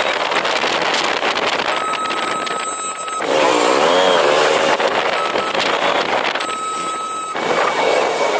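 Motorcycle riding through traffic: steady engine and wind noise. A warbling vehicle horn or alarm wavers up and down in pitch for about a second and a half, starting about three seconds in.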